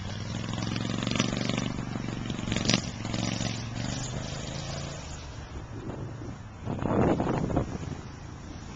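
A small vehicle engine running with a steady drone that fades after about five seconds, then a brief louder noisy rush about seven seconds in.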